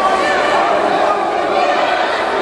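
Many voices talking and calling out at once, echoing in an indoor sports hall: the spectators and players of a youth futsal game.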